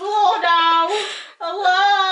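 A child's high voice wailing in long, sung, drawn-out notes: two phrases with a short break between them about one and a half seconds in.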